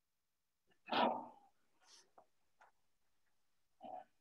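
Video-call audio cutting out on an intermittent internet connection: dead silence broken by one short garbled burst about a second in, a few faint blips, and another brief fragment near the end.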